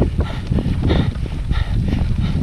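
A cyclist breathing hard through an open mouth on a steep high-altitude climb, several breaths in quick succession, over steady wind rumble on the helmet-mounted microphone.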